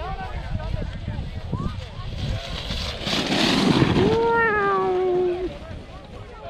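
A low rumble on the microphone with faint children's voices on a sledding hill. About three seconds in comes a loud rush of noise, followed by a long drawn-out shout, over a second long, slowly falling in pitch and cut off sharply.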